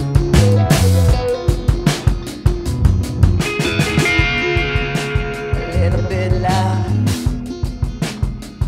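Live rock band playing an instrumental passage: electric guitar over electric bass and a steady drum beat.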